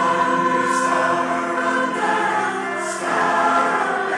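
Mixed choir singing sustained chords, with two brief hissing consonants sung together, one under a second in and one near three seconds.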